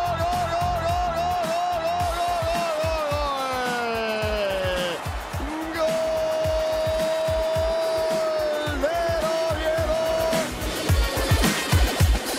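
A football commentator's long, drawn-out shout of "gol", held with a wavering pitch that falls away about five seconds in, then a second long held "gol" that breaks off about ten seconds in, over background electronic music with a steady beat.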